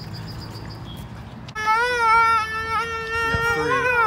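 A person's voice holding one long high note, wavering slightly, then sliding down near the end.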